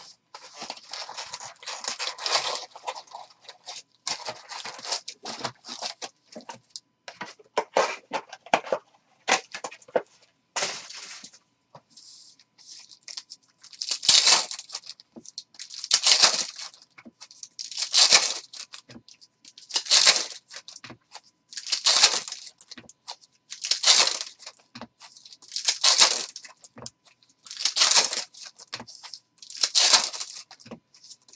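Foil wrappers of Panini Contenders football card packs rustling, crinkling and tearing as packs are ripped open by hand. Irregular rustling at first, then from about halfway through a loud crinkle about every two seconds.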